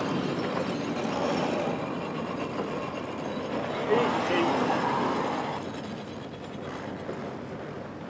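Steady rushing of wind and sea on a sailing ship's deck while lines are hauled, with a sharp knock about four seconds in; the noise eases in the last couple of seconds.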